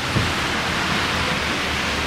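Steady rain falling, heard as an even hiss with a faint low rumble beneath.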